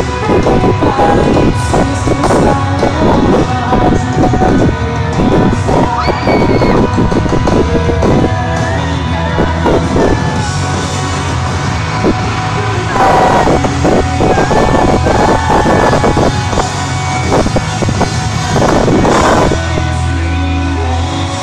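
Loud live pop-rock band music played through a concert PA in a large hall, with a rhythmic drum beat and a crowd yelling along.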